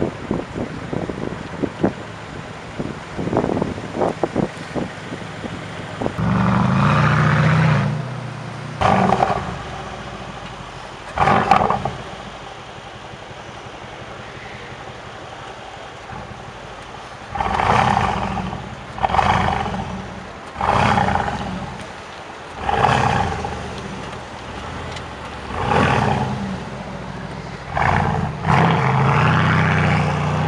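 Mercedes-AMG C63 S's twin-turbo V8 being revved hard through its quad exhausts: a run of short crackles and pops, a held rev of about two seconds, a few seconds of idle, then about six short sharp blips roughly two seconds apart and a longer rev near the end.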